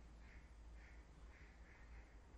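Very faint playback of an outdoor park ambience recording over the hall's speakers: a bird calling over and over, about twice a second, above a steady low hum.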